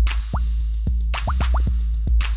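Sped-up jerkin hip hop beat from a drum machine: a deep steady bass under sharp claps and quick hi-hat ticks, with short rising blips coming around every half second.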